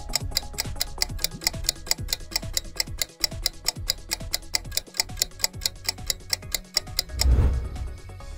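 Quiz countdown timer music: fast, clock-like ticking, about four ticks a second, over low, falling bass notes. About seven seconds in, the ticking stops and a loud low boom swells up as the timer runs out.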